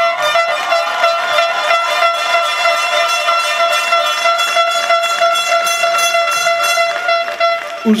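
A horn, of the air-horn kind, blown in one long, loud, steady blast, a single high note held for the whole pause.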